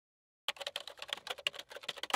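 Rapid computer-keyboard typing clicks, about ten keystrokes a second, starting half a second in after dead silence: a typing sound effect laid under on-screen text being typed out.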